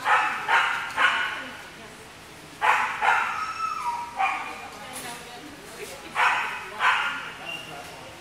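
A dog barking repeatedly, in short groups of two or three sharp barks with pauses of a second or two between groups.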